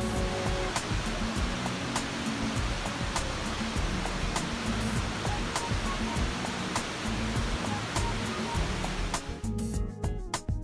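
Steady rush of whitewater from river rapids and falls, heard under background music with a steady beat; the water sound fades out near the end.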